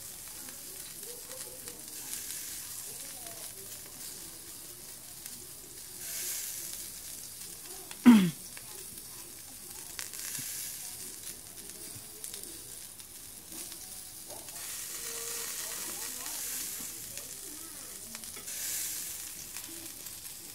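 Meat sizzling on a small round tabletop grill: a steady sizzle that swells every few seconds. About eight seconds in, one short, loud sound slides sharply down in pitch.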